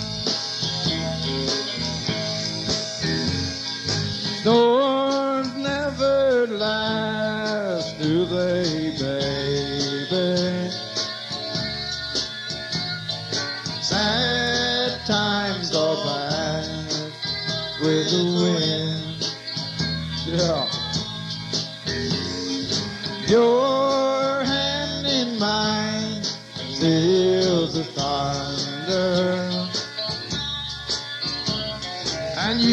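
Live country-rock band playing, with steady cymbal strokes over the bass and a lead line whose notes bend and slide in pitch.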